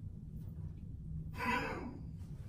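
A person's short breathy exhale, a held-back laugh, about one and a half seconds in, over a low steady hum.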